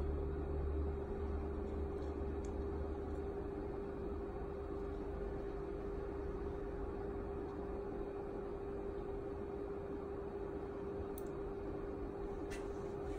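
Steady background hum with one constant tone over a faint even hiss. A low rumble at the start fades out within the first couple of seconds.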